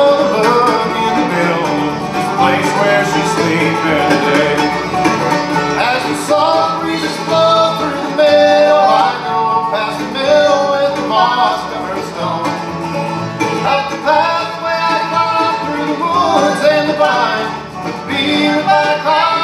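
Live bluegrass band playing a tune on mandolin, five-string banjo, acoustic guitar and upright bass, with quick plucked notes over a steady bass.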